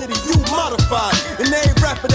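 Hip hop track: a man rapping over a beat, with deep bass hits that fall in pitch.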